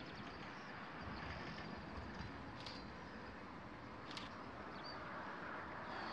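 Faint, steady outdoor background rush with a few brief, faint high chirps scattered through it.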